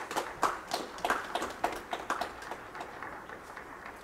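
Applause from a small group of people, thinning out and fading away over the first three seconds.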